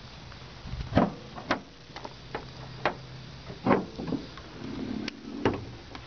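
The hood of a 1997 GMC Sierra pickup being unlatched and raised, its hood latch freshly lubricated with WD-40. The latch and hood make a series of metallic clicks and clunks, about seven spread over the few seconds, the strongest about one second in and near the middle, over a steady low hum.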